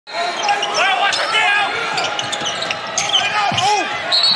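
Basketball shoes squeaking in short chirps on a hardwood court and a ball bouncing, over the noise of an arena crowd.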